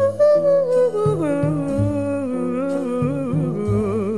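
Slow jazz ballad music: a wordless melody line holds a long note, steps down to a lower note about a second in, and ends on a note with wide vibrato, over soft sustained low chords.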